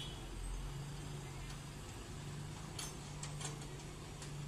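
A diesel truck engine idling with a steady low hum, with a few faint clicks about three seconds in.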